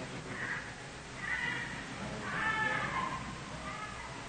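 A faint, distant high-pitched human voice in a few short wavering phrases, the longest and loudest from about two seconds in, over the recording's steady hum.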